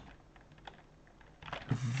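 A few faint, scattered computer keyboard key clicks in a quiet room, then a man's voice begins near the end.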